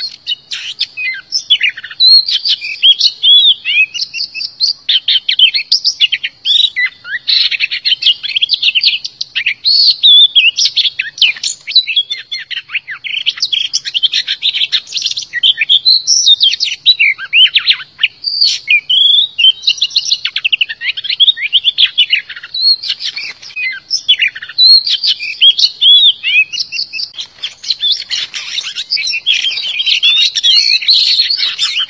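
Oriental magpie-robin singing a rapid, nearly unbroken run of varied clear whistles, trills and sweeping notes. This is a decoy song of the kind used to lure wild magpie-robins and to prompt caged ones to sing.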